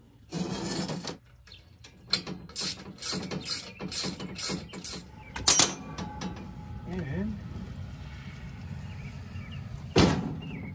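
Steel mixer stand frame handled on a steel-sheet worktop: a string of metal clanks and knocks, the loudest about five and a half seconds in.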